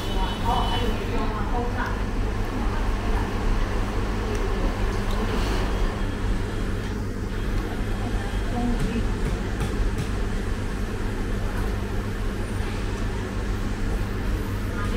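Eatery ambience: indistinct voices talking in the background over a steady low hum.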